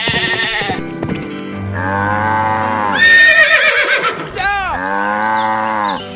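Farm animal call sound effects: about three long, wavering calls over cheerful background music.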